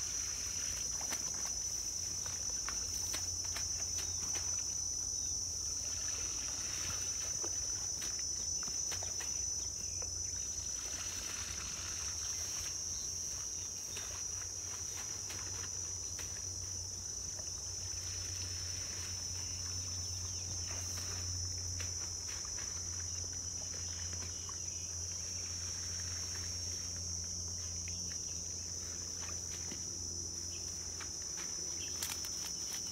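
A steady, high-pitched insect chorus: one unbroken buzz throughout, over a low rumble, with faint scattered clicks and rustles.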